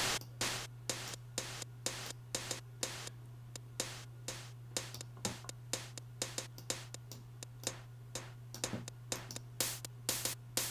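Ultrabeat drum-synth closed hi-hat playing a quick, even step-sequenced pattern, with a layer of Ultrabeat's noise generator added on top for a burst of high-frequency presence. A low steady hum runs underneath.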